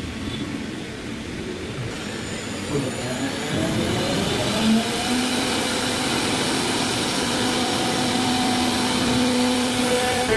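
1325 CNC router's spindle cutting grooves into a wooden door panel, a steady high whine over the noise of the bit chewing wood. About two seconds in the whine climbs in pitch, then holds steady.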